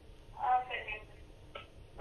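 A caller's voice coming faintly over a telephone line, thin and band-limited, with one short utterance about half a second in and a brief click a second later.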